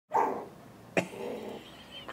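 Chihuahua puppy barking twice, about a second apart, the second bark short and sharp.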